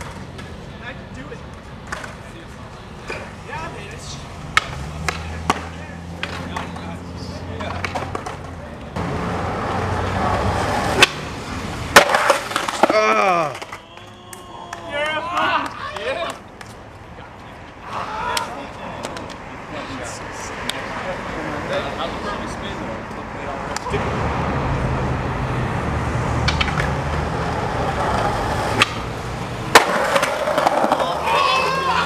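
Skateboard wheels rolling on concrete with sharp clacks of the board, and two loud impacts about eleven and twelve seconds in, followed by voices shouting. The rolling returns in the last several seconds.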